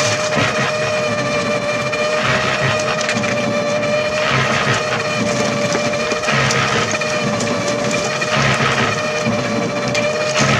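Electric concrete mixer running: a steady motor hum with a rush of concrete tumbling in the turning drum about every two seconds.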